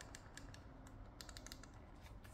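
A quick series of faint clicks from the plastic volume buttons on a JBL Tune 510BT headphone ear cup being pressed again and again.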